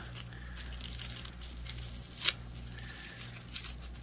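Dry shed snake skin crinkling and tearing faintly as fingers pull it apart, with one sharp crackle about two seconds in.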